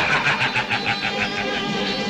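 A man's rapid, rattling laugh, about six pulses a second, trailing off after a second and a half.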